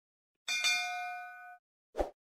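A notification-bell sound effect: a bright ding about half a second in, several tones ringing together and fading over about a second. A short soft pop comes at the very end.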